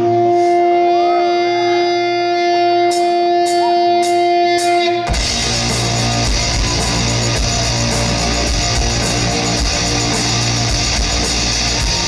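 Live rock band opening a song: an electric guitar holds a steady sustained note, four evenly spaced clicks sound about half a second apart, and about five seconds in the full band comes in loud with electric guitars, bass and drums.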